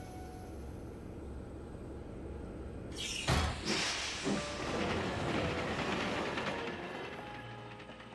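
Cartoon steam train pulling into a station: a steady low rumble, then a few sharp knocks about three seconds in, followed by a long hiss of steam that fades toward the end.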